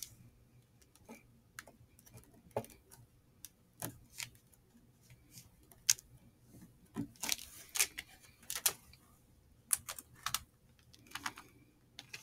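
Fingers pressing a cotton wick into the edge of a honeycomb beeswax sheet on a wooden table: faint, irregular clicks and ticks, a few bunched together past the middle.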